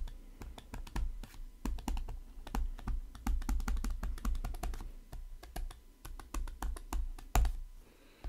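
Stylus tapping and clicking against a tablet screen during handwriting: a quick, irregular run of small clicks, with one louder click near the end.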